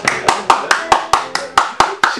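Hands clapping in a quick, even rhythm, about four to five claps a second.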